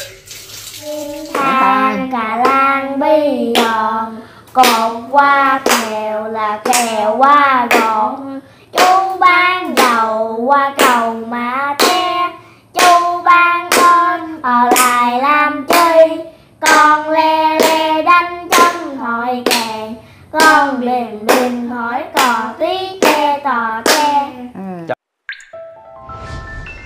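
Children singing a song together, a melody of short phrases with held notes. A brief hiss of running water sounds just before the singing begins.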